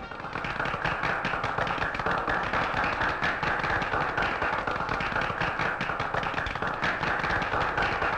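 A crowd applauding: dense, steady clapping from many hands that starts as the song's music stops.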